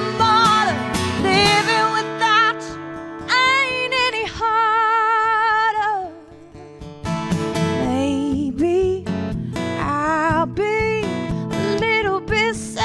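A woman singing with vibrato on long held notes, accompanied by a strummed acoustic guitar. About six seconds in the voice drops away and everything goes softer for a moment before the singing comes back.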